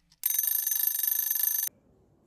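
A timer's alarm bell rings loudly and steadily for about a second and a half, then cuts off suddenly: the time's-up signal of a kitchen timer.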